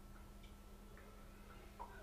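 Near silence: a faint steady background hum with a few faint, scattered ticks.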